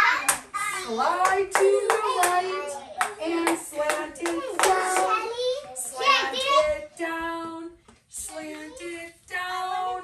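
Young children's voices chattering and calling out over one another, some words drawn out into held, sing-song notes.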